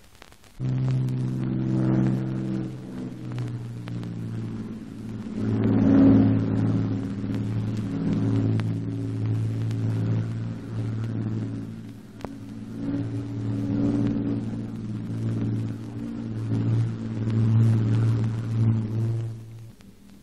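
A low, steady drone of aircraft engines that starts about half a second in and swells and fades in loudness several times.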